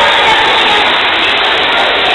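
Loud, steady din of many voices at a busy swimming pool, children shouting and calling over one another with no single voice standing out.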